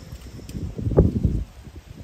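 Wind buffeting the microphone: a low, gusting rumble, with one thump about a second in.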